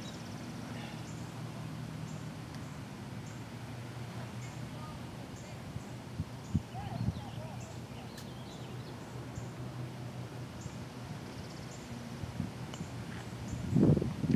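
Quiet outdoor ambience: a steady low hum, with faint chirps and a couple of soft taps around the middle.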